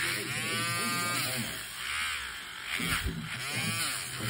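Electric podiatry nail drill with a sanding band grinding down a thickened toenail. Its motor whine keeps sweeping up and down in pitch as the band bears on the nail and eases off.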